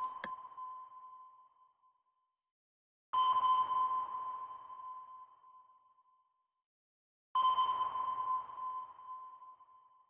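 Electronic sonar-style ping repeating every four seconds or so: a clear high tone with fainter higher overtones, each struck sharply and fading out over two to three seconds. One ping is already fading at the start, and new ones sound about three and seven seconds in.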